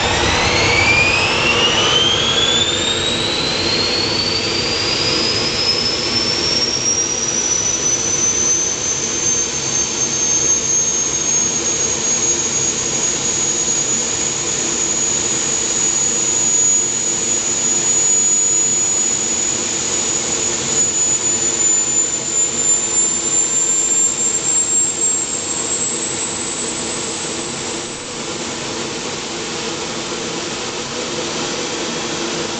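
T-41 gas turbine engine on a go-kart spooling up during start-up. Its high whine climbs quickly through the first several seconds, then holds at a steady high pitch as the turbine runs smoothly, edging a little higher near the end.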